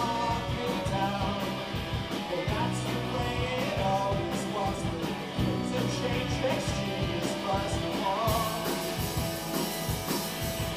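Live rock band playing: two electric guitars, bass guitar and drum kit, with the cymbals getting louder from about eight seconds in.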